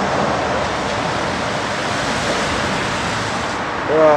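A steady rushing noise with no distinct events in it.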